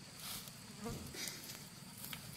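Faint, steady high-pitched insect buzzing outdoors, with a few soft rustling, tearing sounds as cattle crop weeds and grass close by.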